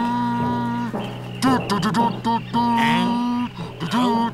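Cartoon elephant trumpeting: two long held notes with shorter rising and falling calls between them, over a few hand-drum beats.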